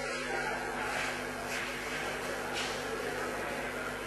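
Quiet indoor court room tone: a steady low hum with a few faint, soft brushing sounds, about one and a half and two and a half seconds in.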